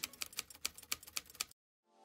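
Typewriter keys striking in a quick run of about a dozen keystrokes, stopping abruptly about one and a half seconds in.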